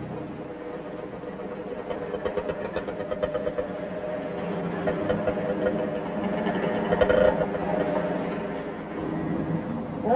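A motor vehicle engine running, growing louder up to about seven seconds in and then easing off slightly.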